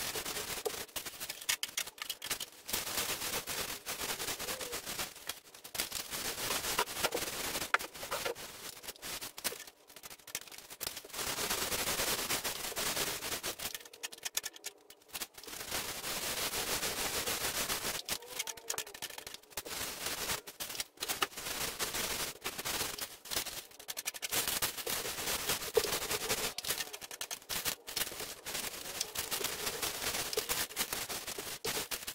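Paint roller on an extension pole rolling wet sealer over a textured drywall ceiling: a dense crackle of fine clicks in strokes a few seconds long, with short pauses between strokes.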